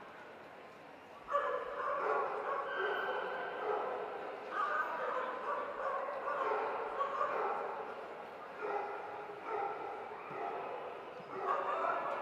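A dog howling and whining in long, drawn-out calls that shift in pitch, starting about a second in and running almost without a break.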